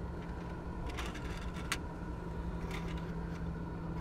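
A few light plastic clicks as a Bluetooth cassette adapter is handled, over a steady low hum.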